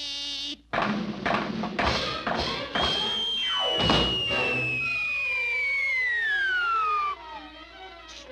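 Cartoon orchestral underscore with sound effects: a quick run of knocks and taps over the first three seconds, then a long whistle sliding steadily down in pitch for about four seconds, the classic cartoon falling sound for a drop from a high diving board.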